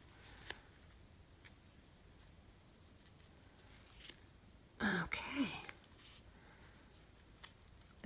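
Faint handling sounds of yarn being pulled tight and knotted around a plastic pom-pom maker, with a few small ticks and one brief louder rustle about five seconds in.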